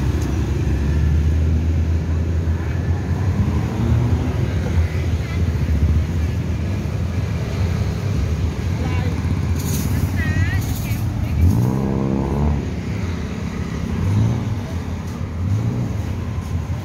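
Street traffic of cars and motorbikes running past with a steady low rumble. About twelve seconds in, a motorbike engine revs up as it passes.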